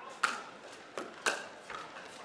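Pickleball paddles striking the hollow plastic ball in a fast rally: a few sharp pops, the first the loudest.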